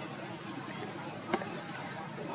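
Insects buzzing: a steady, high, thin tone over a general outdoor hiss, with one short sharp click a little past halfway.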